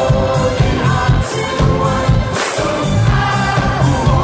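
Live pop song played loudly through a festival PA: a male lead singer with backing vocals over a band with a steady beat.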